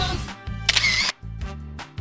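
Quiz-video background music with a steady bass beat, and a short camera-shutter-like transition sound effect about half a second in.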